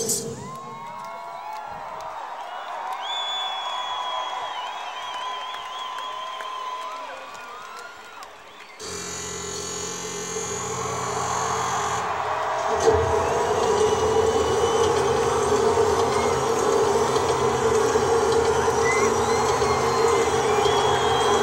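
Large concert crowd cheering and chanting, with a whistle a few seconds in. About nine seconds in, a sustained keyboard or synth chord starts abruptly, and a deeper held drone joins it a few seconds later, the opening of the next song, with the crowd still cheering over it.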